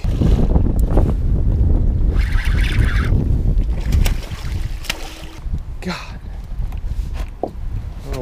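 Wind buffeting the microphone, with splashing as a small Atlantic mackerel is reeled thrashing across the water surface.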